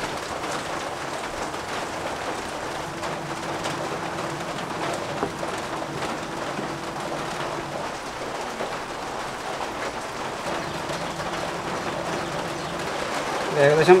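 Sugar melting and bubbling in a nonstick pan as it caramelises to brown, with a steady sizzling hiss while it is stirred with a wooden spatula.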